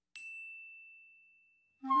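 A single high bell-like ding rings out of silence and fades away over about a second and a half. Music with flute comes in near the end.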